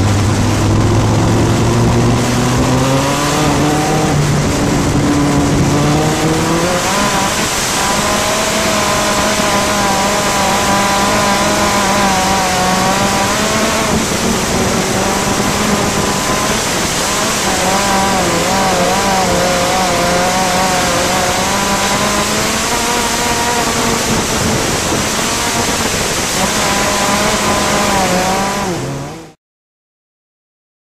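ARDC midget race car's Gaerte 166 ci four-cylinder racing engine at full race pace, heard from the in-car camera with heavy wind noise. Its pitch climbs as the car accelerates over the first several seconds, then rises and falls with the throttle lap after lap. It cuts off suddenly near the end.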